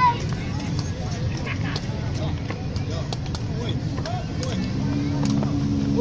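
Outdoor city ambience: a steady low rumble of road traffic with scattered distant voices and a few sharp clicks. Near the end a low engine note holds steady for a couple of seconds.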